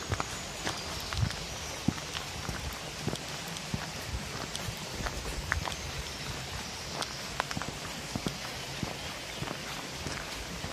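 Footsteps of a hiker walking on a muddy dirt forest track: irregular soft knocks and clicks over a steady outdoor background.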